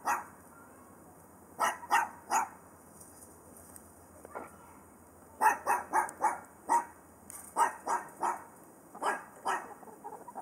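Short, loud animal calls in quick runs of two to six, about three or four a second, with short pauses between the runs.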